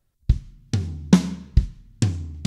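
Drum kit played slowly as a linear fill, one drum at a time, a little over two strokes a second: kick drum, rack tom, snare, then kick again, with the rack tom following right at the end. No two drums sound together, and each tom and snare stroke rings briefly.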